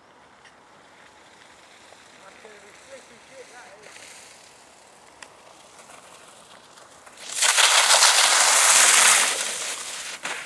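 Mountainboard and rider sliding through wet slush: a loud, even hiss that starts suddenly about seven seconds in, lasts about two seconds and then fades, after a quiet stretch.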